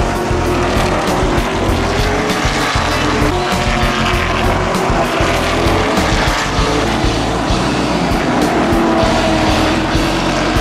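Stock cars running at speed on a paved oval, engines loud as they pass, mixed with background music that has a steady beat.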